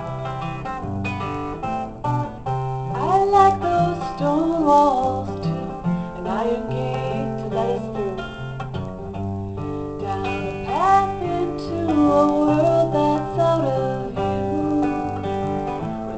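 Acoustic guitar playing an instrumental passage of a folk song, a steady picked pattern over a repeating bass figure. A melody line rises above it twice, sliding up in pitch.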